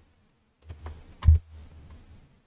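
A few computer keyboard and mouse clicks, the loudest about a second and a quarter in, as highlighted code is set running, over a low hum.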